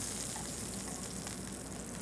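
Butter and meat juices sizzling in a hot stainless steel pan on the highest setting, a steady hiss.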